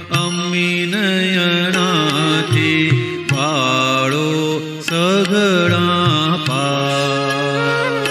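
A Gujarati devotional song (pad) playing: a melody that bends and wavers runs over a steady drone.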